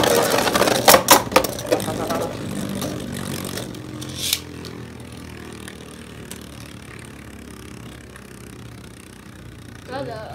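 Two Beyblade Burst spinning tops whirring in a clear plastic stadium, clacking against each other and the stadium wall in the first two seconds and once more about four seconds in. Then they spin on steadily, the whir slowly fading as they lose speed.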